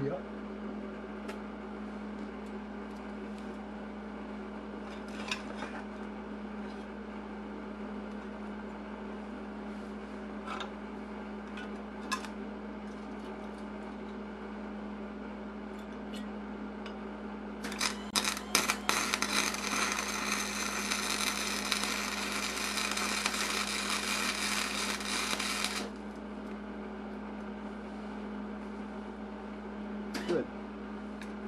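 Wire-feed welder arc: a few sputtering starts about two-thirds of the way in, then about eight seconds of steady crackling before it stops abruptly. This is a test bead. A steady low hum runs underneath, with a few faint clicks earlier.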